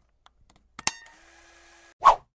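A few faint clicks, then a sharper double click a little under a second in, followed by a faint steady hiss with a low hum.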